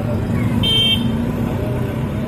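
Street traffic noise with a low engine rumble, and one short high-pitched horn beep about two-thirds of a second in, one of a series repeating every couple of seconds.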